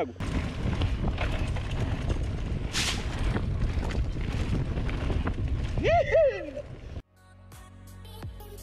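Wind rumble on a handlebar action camera's microphone and tyre noise from a mountain bike rolling along a dirt trail, with a short call from a voice about six seconds in. The riding noise cuts off suddenly near the end, giving way to music.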